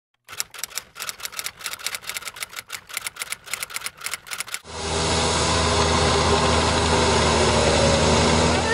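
Rapid, irregular clacking of typewriter keys for the first four and a half seconds. It then switches suddenly to a steady rush of noise with a low engine hum: a tracked snow groomer's diesel engine running while a snowmaking gun sprays.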